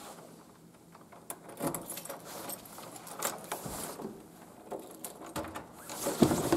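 Keys jangling and a spare key working a door lock: a run of metallic clicks and rattles from the key, knob and latch, starting about a second and a half in.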